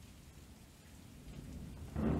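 Faint steady rain ambience with a low thunder-like rumble that swells toward the end.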